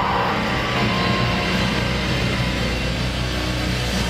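Live metal band's amplified guitars and bass holding a steady low drone through the club PA.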